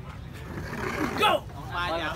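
Spectators' voices and chatter over a steady low background rumble, with one short, louder falling call a little over a second in.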